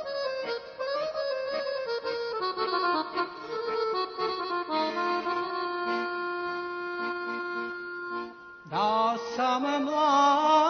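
Accordion playing a slow sevdalinka melody with ornamented runs, then holding a sustained chord for a few seconds before a new phrase comes in with an upward swoop near the end.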